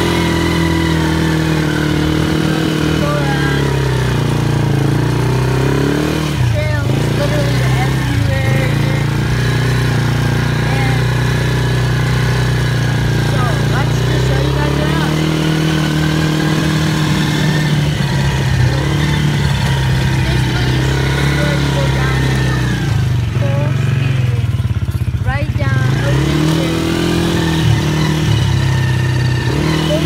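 A 110cc quad's small single-cylinder engine running under way, its pitch rising and falling with the throttle; the revs drop off about six seconds in and again around twenty-four seconds in, then climb back up.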